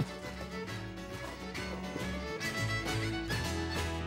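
Live folk band playing: a bowed fiddle over acoustic guitar and upright double bass, with a steady bass line underneath.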